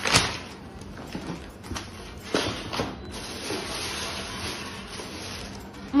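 Brown paper bag and white tissue paper rustling and crinkling as a shoebox is unpacked by hand, loudest in a burst at the very start and again in short bursts a little over halfway.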